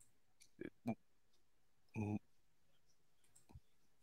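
Mostly low-level quiet broken by brief, faint voice sounds: two short fragments a little under a second in and one short voiced sound about two seconds in. A sharp click comes near the end.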